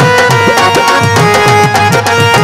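Instrumental interlude of a devotional bhajan: a harmonium holds steady chords over a brisk, continuous rhythm on Indian hand drums.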